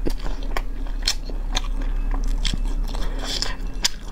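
Close-miked eating sounds of braised chicken: chewing with irregular wet smacks and clicks, about two or three a second.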